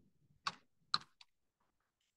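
Computer keyboard being typed on: a few scattered, fairly faint keystrokes, the two clearest about half a second and a second in.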